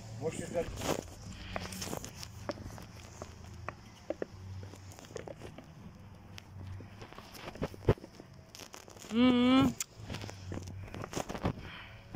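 Light scattered clicks and taps of a wooden spoon scraping the last fried vegetables out of a plastic bowl into a cast-iron cauldron of soup over a wood fire, with the fire crackling. A short, loud vocal sound with a wavering pitch comes about nine seconds in.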